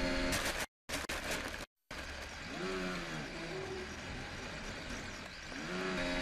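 Formula 1 car's engine heard faintly through the team-radio channel, its pitch rising and falling in short revs. The radio line drops out completely twice in the first two seconds.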